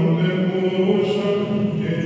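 Voices singing Greek Orthodox Byzantine chant in long held notes, the melody stepping down at the start and holding.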